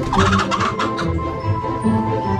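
A chicken gives a short burst of clucking during the first second, over background music.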